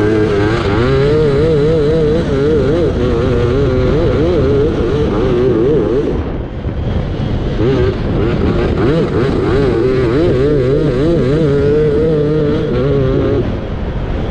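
Racing ride-on lawnmower's engine running hard under the driver, its pitch wavering up and down with the throttle. The engine note drops briefly about six seconds in, then picks up again.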